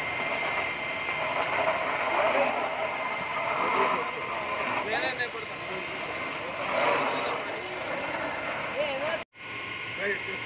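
Steady rushing noise of a fire hose jet with a thin, steady whine throughout, under several people's voices; the sound drops out for a moment near the end.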